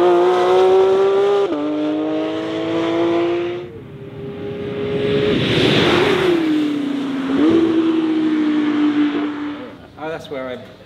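Porsche 911 GT3 RS's naturally aspirated flat-six at high revs on track. The note climbs, drops with an upshift about a second and a half in, and climbs again before fading. Then the car passes close with a rush of air and the pitch falling, and holds a steady high note until near the end.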